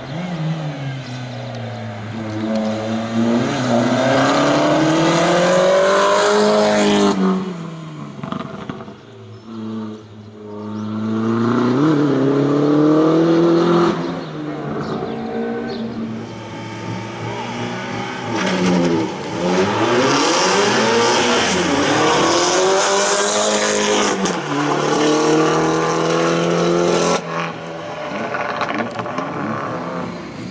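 Opel Corsa race car's engine revving hard and then lifting, over and over, as it threads a tight cone slalom; its pitch rises and falls many times. The sound breaks off abruptly twice, once about a quarter of the way in and once near the end.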